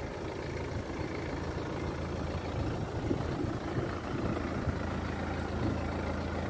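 Car engine idling steadily, a low even hum.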